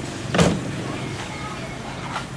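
A single sharp thump about half a second in, over a steady low hum.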